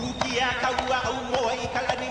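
Hawaiian chant for a men's hula, a single voice intoning over a steady beat of percussion strikes.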